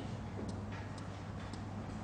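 Pause in speech: a steady low hum and faint hiss of room tone, with a few faint ticks.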